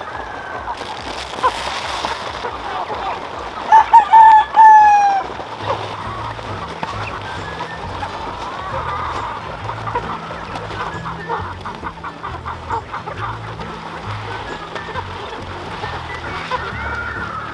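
A large flock of native chickens clucking while they feed, with a rooster crowing loudly once about four seconds in, its call falling in pitch at the end.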